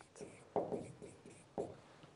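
Marker writing on a whiteboard: three short strokes, the longest about half a second in.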